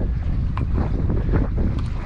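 Wind buffeting the microphone on an open boat at sea, a steady low rumble, with a couple of faint clicks.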